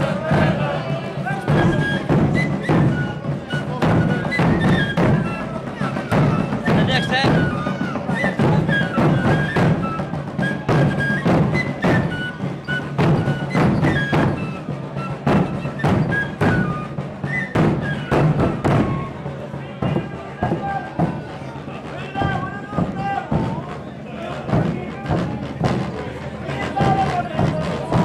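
A group of large Portuguese bass drums (bombos), rope-tensioned and beaten with mallets, playing a loud, dense, driving beat, with voices over it.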